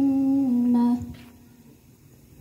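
A girl's voice chanting Quran recitation in melodic Arabic (tilawah), holding one long note that ends about a second in, followed by a pause for breath.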